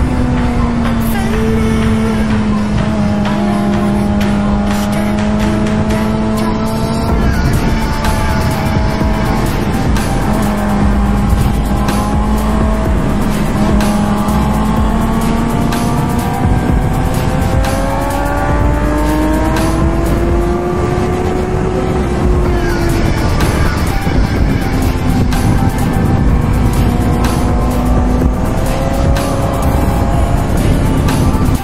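A 2006 Suzuki GSX-R's inline-four engine with a Yoshimura exhaust, running on track with its pitch slowly rising and falling, under steady wind rush. Music plays along with it.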